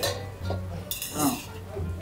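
Chopsticks clinking and scraping in a metal bowl of soup as they fish through the broth for leftover noodles, over background music with a steady bass line.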